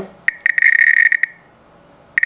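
Homemade Geiger counter's 2 kHz piezo buzzer clicking fast, the counts running together for about a second before stopping. The LND712 Geiger tube is registering radiation from an americium-241 source taken from an ionization smoke detector.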